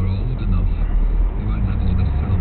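A car's engine and tyre noise heard inside its own cabin as it drives, a steady low hum.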